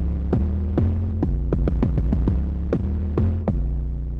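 Novation Peak/Summit synthesizer patch playing a steady low drone under a rapid, irregular run of clicky percussive hits, each with a quick drop in pitch. The hits stop about three and a half seconds in, and the drone carries on, fading.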